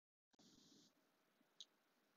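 Near silence: faint room tone, with one faint click about one and a half seconds in.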